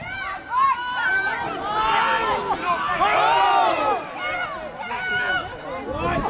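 Several voices shouting and calling over one another around a football pitch, building to a dense peak of overlapping shouts about two to four seconds in.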